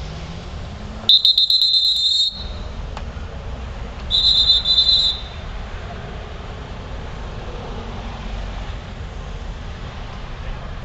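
Two loud, high-pitched trilling whistle blasts, each about a second long, the second about three seconds after the first, over a low rumble of street traffic.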